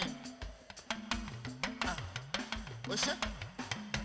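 Live praise-and-worship band music: a drum kit keeps a steady beat over a moving bass line.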